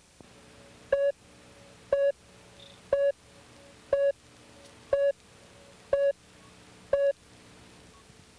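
Video countdown leader beeping: seven short beeps, one a second, all the same mid-pitched tone.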